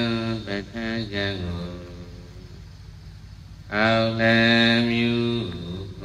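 A Buddhist monk chanting into a microphone in long drawn-out notes: a phrase trailing off about a second and a half in, a pause, then another long held note from past the middle that falls away near the end. A steady low hum runs underneath.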